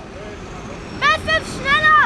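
About a second of low, steady outdoor background noise, then a man's voice speaking in quick, rising-and-falling phrases.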